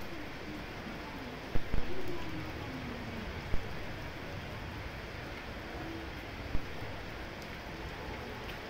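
Steady rain falling, with a few sharp drips or knocks about one and a half, three and a half, and six and a half seconds in.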